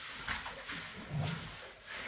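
Long-handled scrubbing brush rubbing over a wet concrete floor in short strokes, about two a second.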